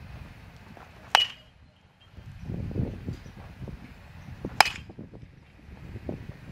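Two sharp metallic pings of a baseball struck by a metal bat, about three and a half seconds apart. The first rings on briefly.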